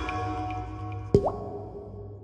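Water-drop plop over fading ambient intro music: a single short plop with a quick upward pitch, a little past halfway, followed by a fainter second drip.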